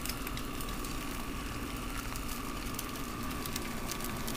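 Egg frying in a little oil in a small nonstick pan on a very hot plate: a steady sizzle with fine crackling throughout.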